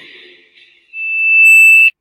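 Music fades out, then a single loud, steady, high electronic beep sounds for about a second and cuts off abruptly.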